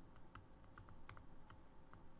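Near silence with a series of faint, light ticks: a stylus tapping and writing on a tablet screen.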